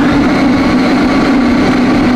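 Electric food processor running steadily, its blade blending mashed banana and sugar into a puree.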